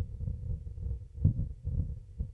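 Low, uneven rumble with soft thuds on a handheld microphone while walking: wind buffeting the microphone and footfalls on a crumbly mudstone slope.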